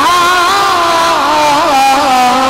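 A man's voice singing one long held note through a microphone, its pitch wavering in slow ornamental turns: a melismatic passage of unaccompanied Urdu naat recitation.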